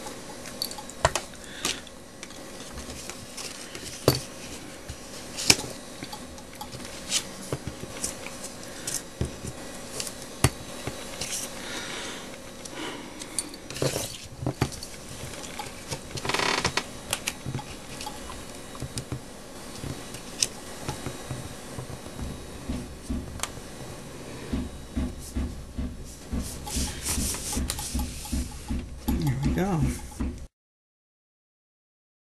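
Paper and cardstock being handled on a cutting mat: scattered light taps and rustles as the pieces are set down and pressed, with a run of quick, regular strokes in the last few seconds.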